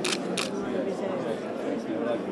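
Two quick camera shutter clicks, about a third of a second apart, over the chatter and laughter of guests in a crowded room.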